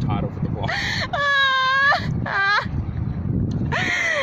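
A young woman's voice making high-pitched mock-ghost wails: a long steady held note about a second in, then a shorter falling cry, and another cry near the end. A low rumble of wind or handling noise on the microphone runs beneath.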